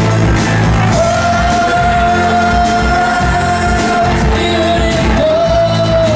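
Live rock band playing: electric guitars, bass and drums under a singer who holds one long, belted high note from about a second in until the end.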